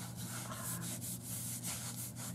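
Fingers rubbing back and forth over textured burlap paper: a run of dry, scratchy strokes.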